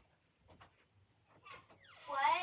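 Near silence: room tone with a few faint clicks as a bedroom door is unlatched and swung open.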